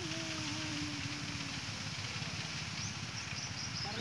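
Irrigation water flowing along a dry furrow between onion beds, a steady rushing. A faint low drawn-out tone sounds over it in the first two seconds.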